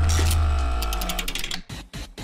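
Short musical transition sting: a deep bass hit under a held chord that fades away over about a second and a half, with a quick run of light ticks as it dies out.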